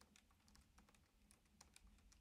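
Faint keystrokes on a computer keyboard, an irregular run of light clicks as a line of code is typed.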